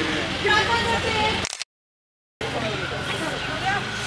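Voices of performers and crowd with a steady low hum underneath, dropping out to dead silence for under a second about halfway through.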